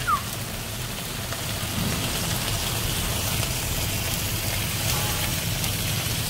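Lamb neck pieces sizzling steadily in a metal pan in a wood-fired oven, five minutes into roasting, cooking in their own fat on a bed of salt with no oil added. A low steady hum runs underneath.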